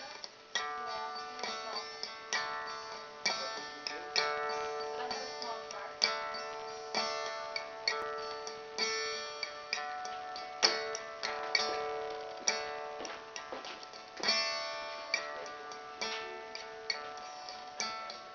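Acoustic guitar playing an instrumental intro: plucked notes and chords in a steady rhythm ring out over one held note.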